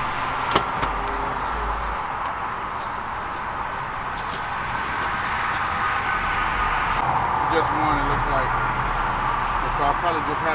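Steady outdoor background noise, with a few sharp clicks and knocks from camera gear being fitted onto a pickup truck bed, the sharpest about half a second in. Faint voices are heard near the end.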